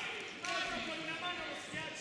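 People's voices calling out, with one sharp hit about half a second in.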